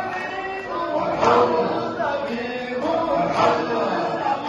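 A crowd of men chanting Sufi dhikr together in a hadra, many voices on a sustained chant that swells loudly about every two seconds.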